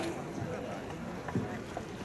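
Faint, steady hall ambience: low murmur of a seated audience, with a few soft knocks.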